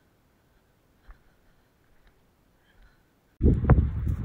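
Near silence with a faint click about a second in. Near the end, wind buffeting a phone microphone starts abruptly and loud, with one sharp knock of handling in it.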